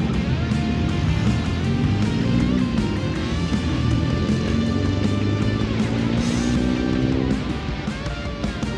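Background music led by guitar, with held notes over a steady accompaniment.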